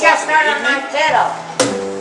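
Talking among the players between tunes, then a sharp knock about one and a half seconds in, after which a string-instrument note rings on steadily.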